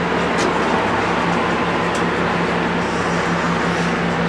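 Steady mechanical hum and hiss of machinery running, with a few light clicks.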